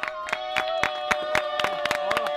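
A small group clapping unevenly, with one long steady held note sounding over the claps throughout.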